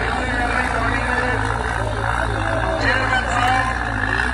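Tractor diesel engine running steadily under load as it pulls a heavy tanker, with people's voices over it.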